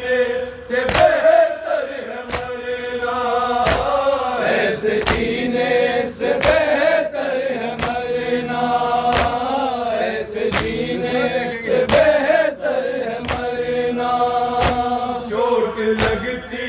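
A group of men chanting a Muharram noha (lament) in chorus, with sharp chest-beating (matam) strikes keeping an even beat about every second and a quarter.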